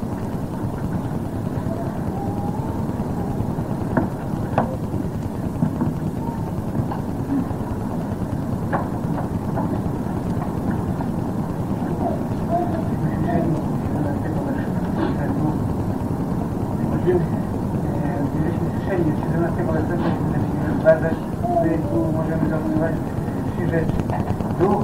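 Indistinct voices over a steady background rumble, from an old audio cassette recording. It is muffled, with nothing above about 2 kHz. The speech-like sounds become more frequent in the second half.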